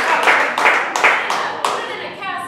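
Audience applause, dense clapping that dies away gradually toward the end.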